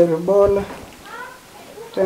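Speech only: a man talking in a language other than English, with a short pause about halfway through.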